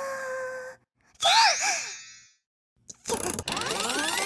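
Cartoon character sounds: a held wordless vocal note cuts off, then, after a short gap, comes a brief wordless vocal sound that rises and falls twice. Near the end a busy sound-effect rush of many rising whistling glides begins.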